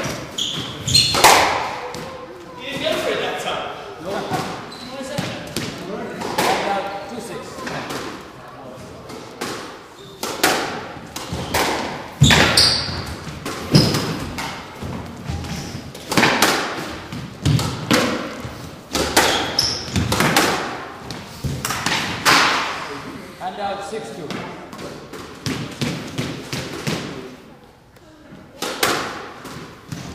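Squash ball struck by rackets and hitting the walls and floor of a squash court, in irregular sharp knocks about a second or so apart, echoing in the enclosed court.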